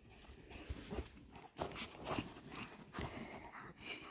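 Two dogs, a Great Pyrenees and a pyredoodle, running in and play-fighting: irregular thuds and scuffling of paws on sandy ground.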